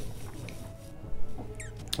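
Mouth sounds of wine tasting: quiet sipping and slurping as air is drawn through the wine, with a short squeaky slurp near the end.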